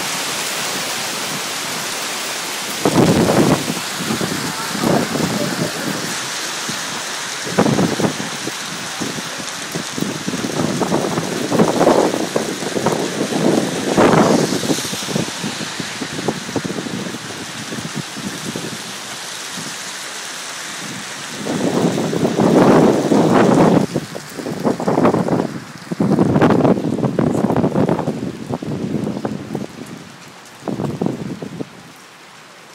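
Heavy rain falling in a steady hiss, broken every few seconds by louder bursts of noise, strongest in a cluster about two-thirds of the way through.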